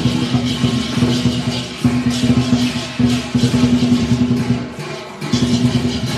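Chinese temple procession music: rapid drumming under a held, horn-like tone, with bright cymbal crashes coming in and out. It eases off for a moment just before the end.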